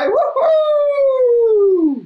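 A man's voice giving a long, drawn-out "woo-hoo!" cheer, its pitch gliding steadily down until it cuts off suddenly near the end.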